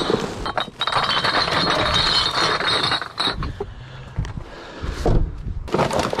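Garbage being rummaged through in a dumpster: plastic bags rustle while hard junk clinks and knocks together. The rustling is loudest for about the first three seconds, then drops to quieter clatter, with one louder knock near the end.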